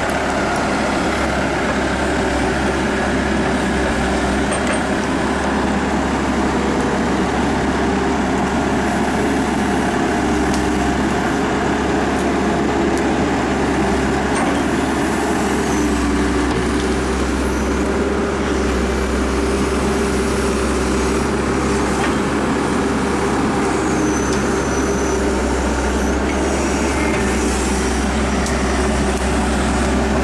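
Diesel engine of an excavator running steadily under load as its bucket and blade push dirt.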